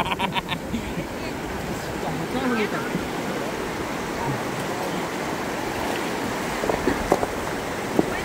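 Steady rush of shallow river water running over rocks, with a short laugh at the start and faint voices in the distance.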